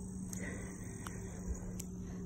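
Steady high-pitched insect chorus, with a few faint soft steps of bare feet in wet mud.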